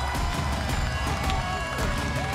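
Music with a heavy, steady bass beat and a melody line playing over it.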